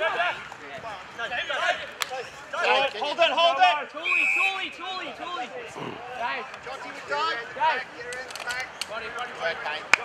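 Footballers and onlookers shouting across an open ground, with one short, steady umpire's whistle blast about four seconds in that stops play after a tackle.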